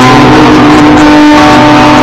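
Live acoustic guitar music: one long steady note is held over the guitar, with little strumming until just after it ends. The recording is very loud, close to full scale.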